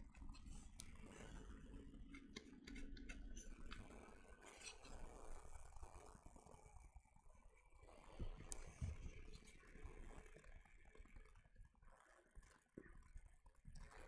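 Near silence with faint handling of hard plastic model-kit parts being pressed together, a few light clicks and scrapes scattered through.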